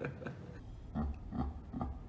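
A man laughing: a quick run of laugh pulses trailing off at the start, then about four slower, low chuckles from about a second in.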